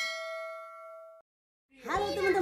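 A notification-bell 'ding' sound effect: one bright chime that rings and fades, then cuts off suddenly a little over a second in.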